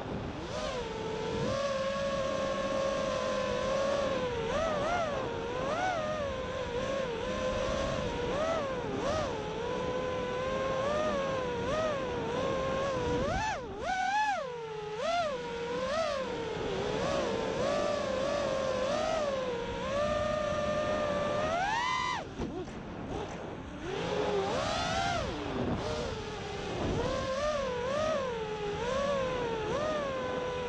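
Brushless motors and propellers of a 230-size FPV racing quadcopter, picked up by its onboard camera. A buzzing whine rises and falls in pitch with the throttle throughout, with sharp climbs about halfway through and about two-thirds through, each followed by a short drop when the throttle is cut.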